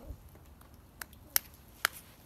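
Three short, sharp clicks in the second half, the last two about half a second apart, over faint background.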